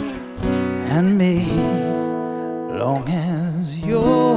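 Acoustic guitar strummed and left ringing, with a man's wordless sung line that wavers in pitch over the chords: the closing bars of a country ballad.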